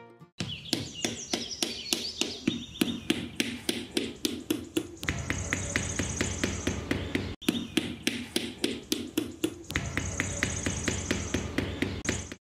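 Small hammer tapping bamboo sticks into sand: a steady run of quick, light taps over background music.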